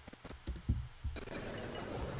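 Several sharp clicks of computer keys in quick succession, then from about a second in a faint steady hiss.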